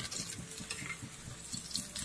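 Battered jackfruit fritters deep-frying in hot oil, the oil sizzling with many small crackling pops, while a metal slotted spoon stirs and turns them in the pan.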